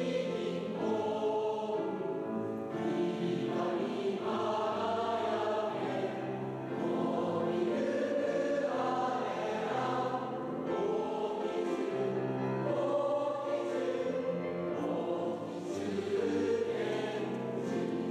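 A choir singing a slow song, with long held notes that change every second or two.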